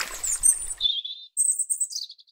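A hiss that fades out over the first second, then a few short, very high-pitched chirps like bird tweets, the last ones stepping down in pitch near the end.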